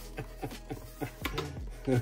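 Background music with a repeated beat, under light knocks and rustles of a cardboard box being handled and opened.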